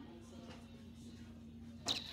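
Quiet store room tone with a steady low hum, and a short swish near the end.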